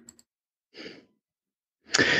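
A single short breath, a quick intake of air lasting about a quarter of a second, just under a second in, in an otherwise near-silent pause.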